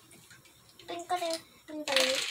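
A young child's voice: two short vocal sounds, the first about a second in and the second near the end, which comes with a breathy rush of noise.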